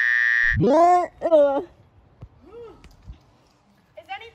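A young woman's high-pitched shriek, held steady and cut off about half a second in, followed by two swooping vocal cries, then only faint rustles.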